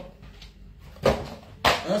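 A man's voice in a small room, after about a second of quiet, with a sharp knock just before he speaks near the end.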